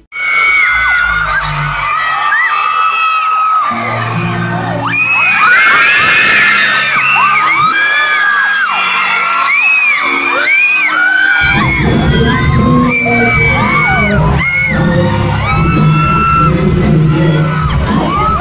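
A concert crowd of fans screaming and cheering, many high-pitched shrieks overlapping, over amplified pop music. A heavier bass beat comes in about two-thirds of the way through.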